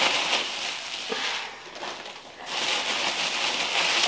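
Packing peanuts rustling as hands dig through them in a cardboard box, in two spells with a short lull in between.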